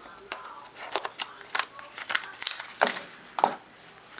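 Cardboard and plastic phone packaging being handled: a run of irregular clicks, scrapes and rustles as the inner tray and paper inserts are lifted out of the box.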